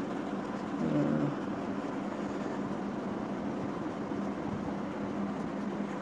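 Steady background hum and hiss of room noise, with a brief low pitched hum about a second in.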